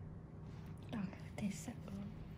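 Soft, low voices in a few short fragments, whispered or murmured, over a steady low hum.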